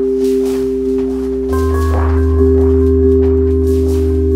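Elektron Syntakt synthesizer playing a piece made only with its SY Bits machine: two steady sustained tones over a low drone. About a second and a half in, the bass steps to a new, stronger note and a few higher notes come in, with soft noise swells recurring through it.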